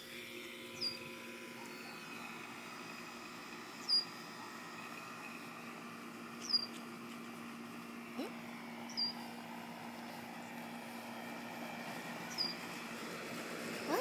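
A bird's short, high call, a quick downward whistle, repeated five times a few seconds apart, over a steady low hum.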